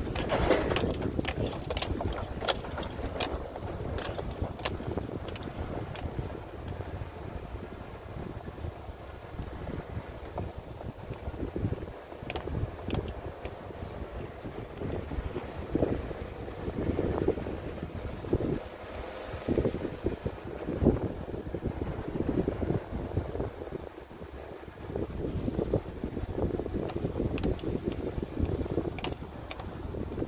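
A vehicle driving along a rough dirt track: a steady rumble of engine and tyres, with frequent short rattles and knocks as it goes over bumps, and some wind on the microphone.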